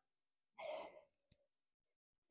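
A short, soft breath pushed out during a lying back-extension lift with a resistance band, followed by a faint click; otherwise near silence.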